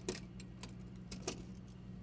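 Light metallic clicks and clinks of a metal manipulator tong's parts being handled as it is fitted back onto the manipulator: a sharp click at the start and another about a second and a half later, over a faint steady low hum.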